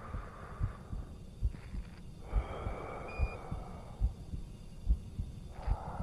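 Space-film soundtrack of a slow heartbeat, a deep thump a little under once a second, with two long breaths like an astronaut breathing inside a helmet, played over a video call.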